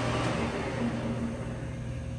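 Clausing Metosa 1340S lathe running with the spindle turning forward at mid-range speed: a steady mechanical hum from the headstock. Over the second half it softens and dies down as the spindle slows.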